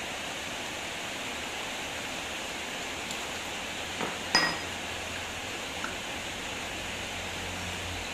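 A steady hiss with a single sharp metallic clink about four seconds in that rings briefly, a smaller tap just before it: steel parts of a front shock absorber knocking together as its rod and seal guide are worked out of the tube.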